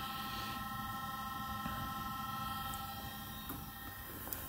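Faint steady hum with several thin, steady high-pitched whining tones, as from electrical equipment running; the car's engine is not running.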